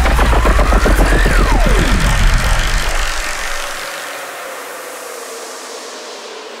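Riddim-style dubstep: a heavy sub-bass under a synth tone that glides upward and then dives steeply. About three and a half seconds in the bass drops out, leaving a fading wash of noise with a held tone.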